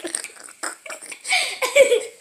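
A few soft knocks, then a little past halfway a brief, loud, rough vocal noise from a person, like a playful mouth noise.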